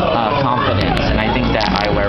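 Background chatter of many people talking at once in a busy room, with a few short clicks about a second in.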